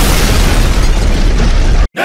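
A loud explosion sound effect: a dense, deep blast that holds steady and cuts off suddenly just before the end.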